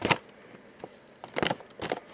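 Plastic blister packs on cardboard toy-car cards being handled and swapped, crackling and clicking: a sharp crackle right at the start, then a cluster of crackles about one and a half seconds in.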